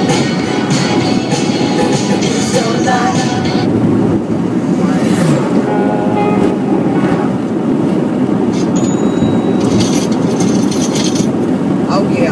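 Steady rumble of road noise inside a moving car's cabin, with music playing on the car stereo; the beat is clearest in the first few seconds, then the drone of the car dominates with brief snatches of voice.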